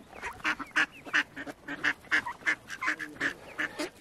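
A flock of mallard ducks quacking, short calls following one another about three a second.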